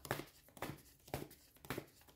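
A deck of homemade paper oracle cards being shuffled by hand, the stack giving short soft slaps about twice a second.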